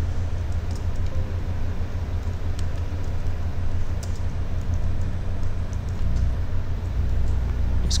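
Steady low hum of background noise, with a few faint computer keyboard clicks as a word is typed.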